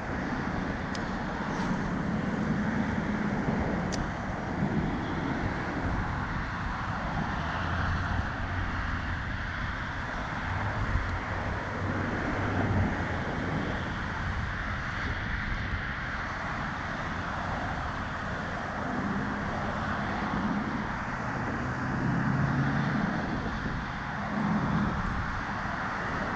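Steady outdoor noise of wind on the microphone, with a low traffic rumble that swells and fades.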